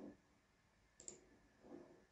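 A single faint computer mouse click about a second in, otherwise near silence.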